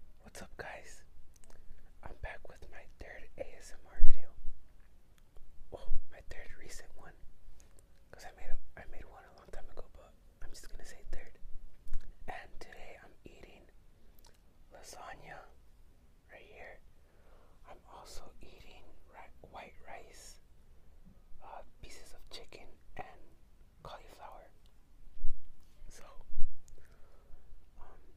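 A man whispering close to the microphone, with a few sharp pops on the strongest sounds, the loudest about four seconds in.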